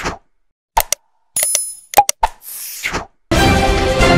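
Subscribe-button animation sound effects: a few pops and clicks, a short bell ring and a swoosh. Theme music starts loudly near the end.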